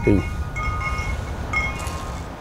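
Wind chimes ringing, several clear tones coming in one after another and ringing on over a low rumble.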